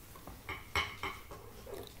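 A few short, light knocks and clinks of small objects being moved about while someone rummages for a knife, mostly in the first second.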